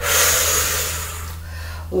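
A person's long, forceful exhale during the effort of a bodyweight exercise: a sudden breathy rush that fades away over nearly two seconds.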